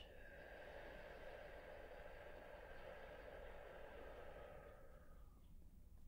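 A woman's long, slow exhale, soft and breathy, lasting about five seconds and fading out near the end: the out-breath of a guided deep breath.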